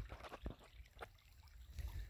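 Faint trickle of rainwater runoff flowing shallowly over a muddy dirt road, with a few soft clicks.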